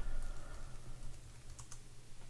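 Typing on a computer keyboard, entering a web address: a few faint key clicks, the clearest pair about one and a half seconds in.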